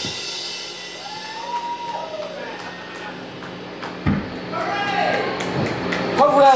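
Live rock band stopping at the end of a song, leaving the guitar amplifier humming steadily. Over the hum, voices give two long calls that rise and fall in pitch, and there is a single thump about four seconds in.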